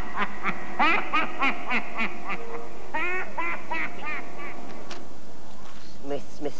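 A cackling laugh, a quick run of short rising-and-falling 'ha' notes about three or four a second, over the last held notes of the eerie theme music. It thins out and dies away about four seconds in.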